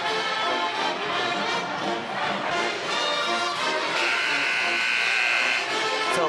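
Brass-heavy band music in an arena, with a long held buzzy chord from about four seconds in until shortly before the end.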